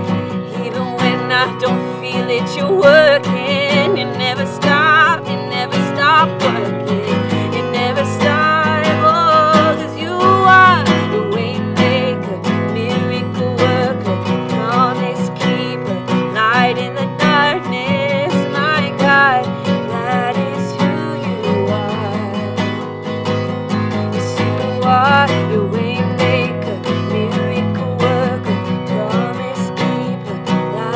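A woman singing a song while strumming an acoustic guitar.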